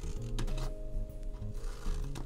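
Scissors cutting through cardstock in a few short snips, over background music with held notes.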